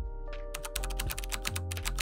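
Computer keyboard typing: a quick run of key clicks starting about half a second in, sounding as the title text types itself out, with background music underneath.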